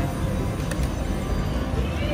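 Casino floor din: background music over a steady low rumble of machines and crowd. A few faint short clicks come in the first second as the video poker machine deals the drawn cards.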